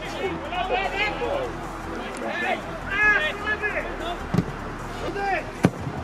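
Scattered shouts of players and spectators carrying across an outdoor football pitch, with one sharp knock near the end.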